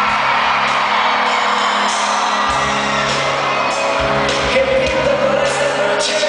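Live rock band playing loudly through a concert PA, with guitars, drums and electronic keyboards under sung vocals, and the crowd whooping and singing along.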